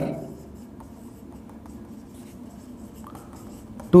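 Marker pen writing on a whiteboard: faint scratching strokes as a line of words is written.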